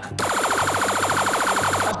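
Game-show face-off buzzer sounding: a rapid electronic trill of about twenty pulses a second, lasting under two seconds and cutting off suddenly. It signals that a contestant has hit the buzzer first to answer the question.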